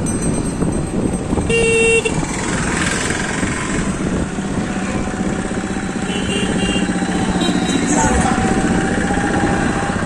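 Road noise from riding a motorcycle in traffic: engines running with a heavy rumble of wind on the microphone. A vehicle horn sounds once for about half a second near two seconds in, and two short high beeps come around six seconds in.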